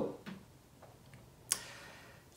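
A pause in a man's speech: a few faint mouth clicks, then a sharp lip smack about one and a half seconds in, followed by a soft breath in.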